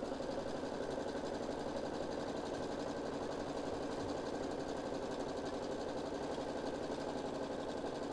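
Baby Lock Solaris embroidery machine stitching at a steady, even speed, the needle running in rapid strokes.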